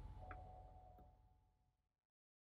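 Near silence: faint room tone with two very faint short clicks, about a third of a second and a second in.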